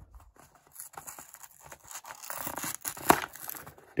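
A cardboard LEGO Minifigures blind box being torn open by hand: irregular ripping and crinkling of the card, with one sharp rip about three seconds in.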